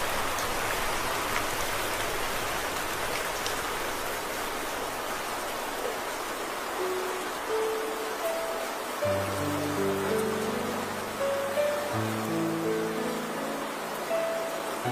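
Steady hiss of rain. A slow melody of single held notes comes in about halfway through, and low bass notes join under it a couple of seconds later.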